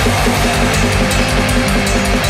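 Atmospheric black metal: distorted electric guitars over fast, even drumming with rapid kick-drum pulses and cymbals.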